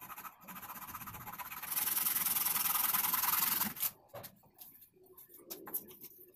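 Hacksaw blade sawing through a wooden popsicle stick by hand in fast back-and-forth strokes. It gets louder about halfway through and stops about four seconds in, followed by a few light clicks and taps of the wooden sticks being handled.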